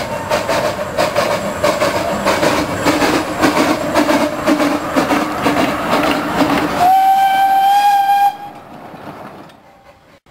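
A small narrow-gauge steam locomotive passing close, its running a loud, rapid rhythmic clatter of beats. About seven seconds in it gives one steam whistle blast, a little over a second long and rising slightly in pitch, which cuts off abruptly.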